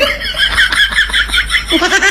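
High-pitched, rapid laughter: a run of quick, evenly repeated pulses of voice, about five a second.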